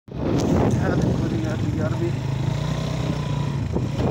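Suzuki 150 motorcycle engine running steadily while riding along a dirt track, with a voice over it.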